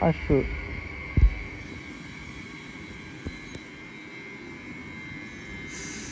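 SNCF Île-de-France electric multiple unit running alongside the platform, giving a steady high whine over a low rumble. A single low thump comes about a second in.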